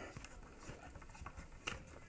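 Faint, scattered ticks and rubbing from the tilt tension knob under an office chair seat being turned by hand, backing the tension spring off toward its loosest setting; one sharper tick near the end.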